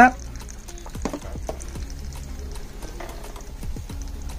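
Slotted metal ladle scooping boiled pepper strips out of a pot of vinegar brine, with liquid dripping and a few light clinks, over quiet music.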